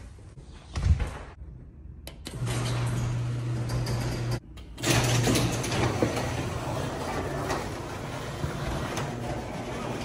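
Door knob turned and a door pulled open, with a knock about a second in. After that comes a steady rushing noise with a low, even hum, broken once by a short drop about four and a half seconds in.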